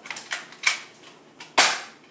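Nerf blaster firing foam darts in quick succession: about five short, sharp pops at uneven spacing, the loudest about one and a half seconds in.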